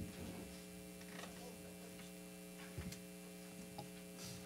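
Steady electrical hum from the church sound system with the lectern microphone open, with a couple of faint knocks as the lectern changes hands.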